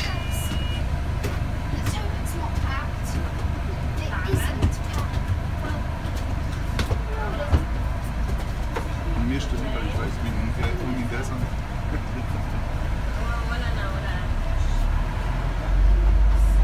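Low, steady rumble of a London double-decker bus heard from inside on the upper deck while it stands, growing louder near the end as the bus moves off. Passengers talk quietly in the background.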